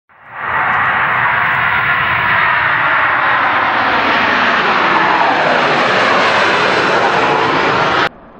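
Jet airliner engines at takeoff thrust: a loud, steady rushing jet noise that swells up within the first half second and holds.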